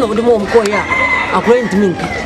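A rooster crowing once in the background, one long call lasting about a second from a little after the start, heard under a man's talking.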